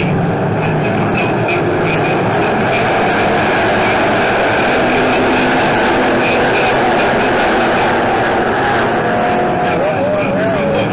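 A pack of dirt-track stock cars racing together, many engines running hard at once in a loud, steady wall of noise heard from the grandstand.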